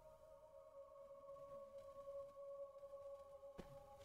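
Near silence with a faint, steady drone of a few held tones, and one faint click about three and a half seconds in.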